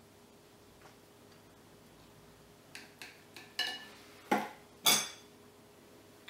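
A metal knife and fork clink and scrape against a ceramic plate while cutting a boiled dumpling. About halfway in there is a short run of light clicks with a faint ring, and the two loudest strikes come near the end.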